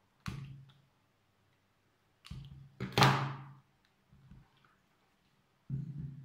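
A handful of short clicks and knocks on a wooden tabletop as pruning shears cut an orchid free of its mount and are set down, the loudest a sharp clack about three seconds in. A dull thump near the end as the mount is laid on the table.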